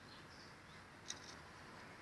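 Near silence: faint outdoor background with one short, sharp click about a second in.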